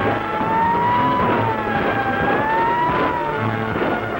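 A wailing siren rising and falling twice in pitch, heard over loud dramatic orchestral score.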